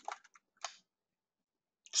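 Three or four light clicks of a computer mouse and keyboard within the first second.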